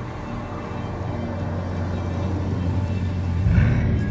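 Bugatti Chiron hypercar driving at high speed, its sound building steadily and peaking in a loud rush as the car passes close by near the end. Music plays underneath.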